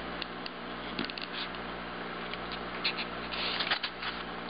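Fingers handling a pinned crab specimen on a styrofoam block: scattered light clicks and rustles, a few at a time, over a steady low hum.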